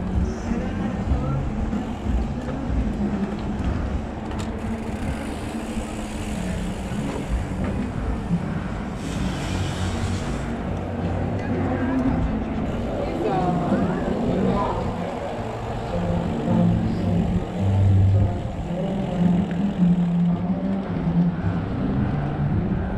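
Wind rumbling on an action camera's microphone, with tyre noise, as an electric mountain bike rolls along a paved road; a brief hiss comes about nine seconds in.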